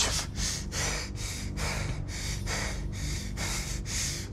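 A man's breathy, panting laughter: short noisy breaths through the nose and mouth, about two or three a second.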